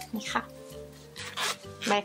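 Hands handling a soft plush fabric pouch, with a short rubbing rustle about one and a half seconds in, over steady background music.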